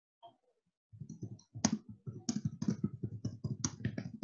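Typing on a computer keyboard: a quick, irregular run of keystrokes that starts about a second in.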